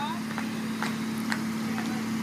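Jeep CJ's engine running steadily at idle, a low even hum, with a few faint clicks.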